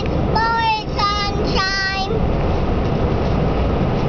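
A young child singing three held, high notes in the first two seconds, over the steady road noise of a moving car's cabin, which carries on alone after the singing stops.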